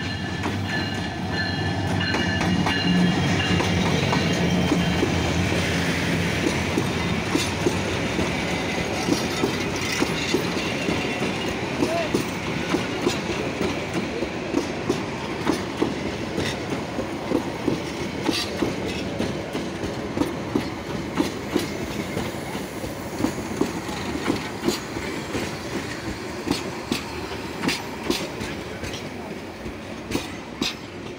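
Diesel-hauled passenger train passing close by. The locomotive's engine hums in the first few seconds, then the coaches roll past with a steady, rhythmic clickety-clack of wheels over the rail joints.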